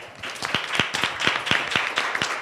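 Small audience applauding, the separate handclaps starting just after the sound begins and quickly filling in.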